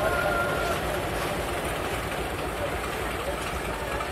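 Steady low rumble and noise of a train in motion on rails, with faint voices in the background.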